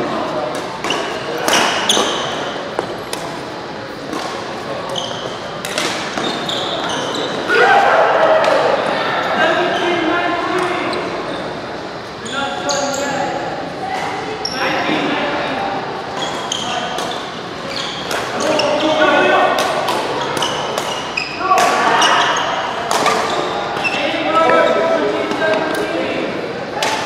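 Doubles badminton rallies in a large, echoing hall: repeated sharp pops of rackets striking the shuttlecock, with shoes squeaking on the court surface in short clusters.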